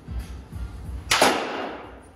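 A baseball bat striking a ball once, about a second in: a sharp crack that rings and fades over most of a second. Background music with a steady beat plays underneath.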